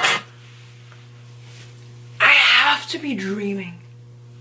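The song cuts off at the start, leaving a steady low hum. About two seconds in, a woman gives a loud, breathy, excited exclamation that falls in pitch and trails off over about a second and a half.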